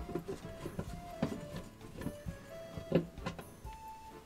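Soft background music of short held notes, with a few sharp clicks and knocks from a screwdriver working the screws of a bench power supply's metal case, the loudest about three seconds in.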